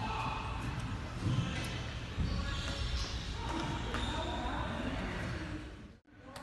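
Gym room noise with a couple of dull thuds, about one and two seconds in, and indistinct voices. The sound fades out at the end.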